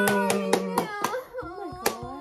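Excited family cheering: a long held shout over quick hand claps, about five a second, that stop about a second in, followed by laughter and one last sharp clap near the end.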